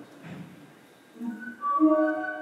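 Computer-generated musical notes from a sonification of molecular states. From about a second in, several sustained tones come in one after another and build into a chord. Each note's timbre, length and volume is set by the stability of the state being sounded.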